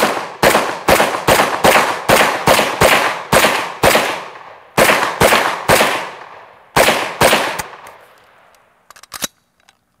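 M1 carbine firing .30 Carbine rounds semi-automatically: a fast string of about ten shots, roughly two a second, then a short pause, three more shots, another pause and two more. Each shot has an echoing tail. A few light clicks follow near the end.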